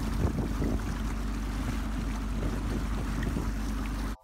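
Boat's DAF 475 diesel engine running steadily, with water churning in the wake and wind on the microphone. The engine is running rich, leaving unburnt diesel on the water.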